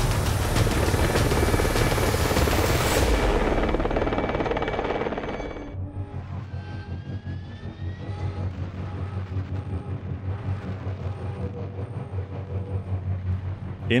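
Cinematic title sound design: a loud rising whoosh swells and fades out about five seconds in. A quieter, low rhythmic pulsing bed follows under the archival war footage.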